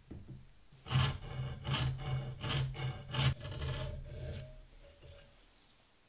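A hand file rasping across the steel spine of a knife blank cut from a circular saw blade: about five strokes in a row, one every second or so, starting about a second in and dying away before the end. It is cutting decorative notches into the spine.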